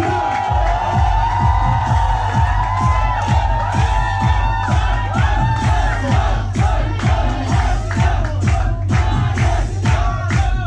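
Club dance music with a steady beat of about two beats a second, which comes in right at the start, under a crowd cheering and shouting.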